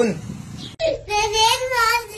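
A high-pitched child's voice singing in long, drawn-out notes, starting suddenly under a second in.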